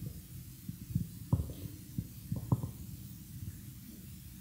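Low steady hum on a live handheld microphone, with four soft low thumps between about one and two and a half seconds in.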